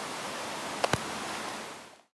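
Steady outdoor background hiss picked up by a camera microphone, with two quick clicks close together just under a second in; the hiss fades out near the end.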